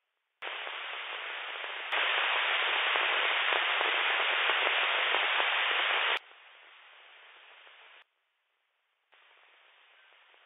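Radio receiver static from an RTL-SDR dongle playing through SDR# software: a steady hiss with a narrow, radio-like tone. It switches on with a click about half a second in and jumps louder near two seconds. Near six seconds it drops sharply, cuts out near eight seconds and comes back faintly about a second later.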